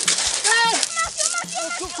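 Raised human voices calling out in short, high-pitched, excited exclamations.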